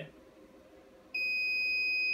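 An uninterruptible power supply's alarm gives one steady, high-pitched beep. It starts about a second in and lasts about a second, and warns that the UPS has switched to battery power during a brownout.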